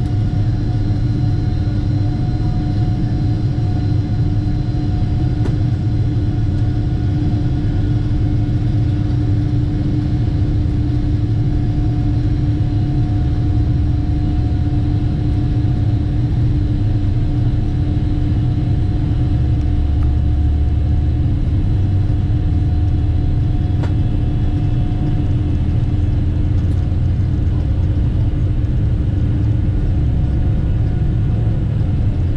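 Cabin noise of a Boeing 777-300 jet airliner rolling on the ground: a steady deep rumble with a steady engine hum over it.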